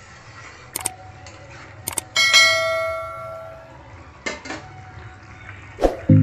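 Subscribe-button animation sound effect: a couple of mouse clicks, then a bell chime about two seconds in that rings out and fades over a second and a half, followed by a few more clicks.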